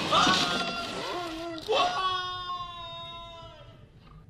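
A film character's voice from the movie soundtrack, shouting and then letting out one long scream that falls slightly in pitch and fades away.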